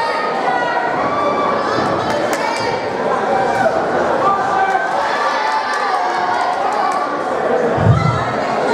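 Spectators shouting and calling out to boxers, many voices overlapping, with a dull thump near the end.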